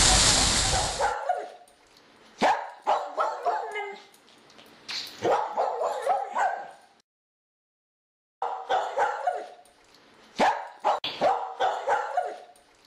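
A fountain's splashing water stops abruptly about a second in. After it, a dog barks and yips in short, sharp bursts, broken by a silent gap of about a second and a half in the middle.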